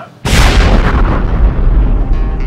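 A sudden loud cinematic boom about a quarter second in, with a deep rumbling tail that slowly fades: a sound-effect hit opening a title sequence's music.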